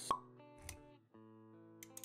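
A sharp pop sound effect just after the start, followed by a soft low thud and quiet held music notes.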